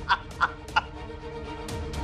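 A man laughing mockingly in short rhythmic 'ha-ha' pulses, about three a second, stopping about a second in. Sustained background music plays underneath.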